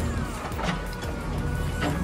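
Background music over the steady low running of a JCB 3DX backhoe loader's diesel engine, heard from inside the cab.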